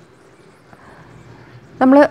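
Quiet room tone: a faint steady hiss and low hum with no distinct event, until a woman's voice starts near the end.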